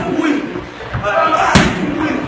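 A strike smacking leather Thai pads held on a trainer's forearms, with one sharp, loud hit about one and a half seconds in, amid voices.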